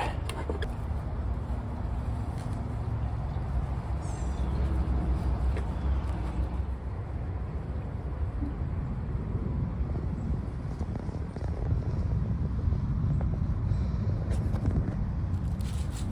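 Steady low outdoor rumble, with a few faint light clicks.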